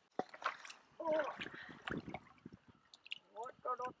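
Small water sounds and scattered light knocks in an aluminium canoe, with a short voiced exclamation about a second in and a laugh near the end.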